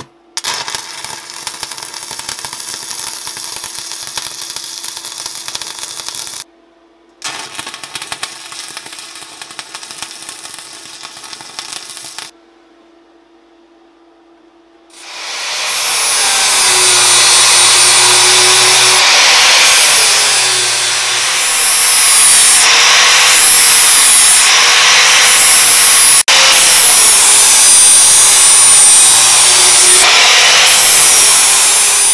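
Stick welding: the arc crackles and sputters in two runs of about six and five seconds, with a steady hum beneath. After a short pause an angle grinder spins up and grinds steel loudly, its pitch shifting as it is pressed into the weld.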